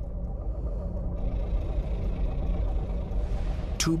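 Deep, steady rumbling drone of a soundtrack's sound design, with a faint airy hiss coming in about a second in.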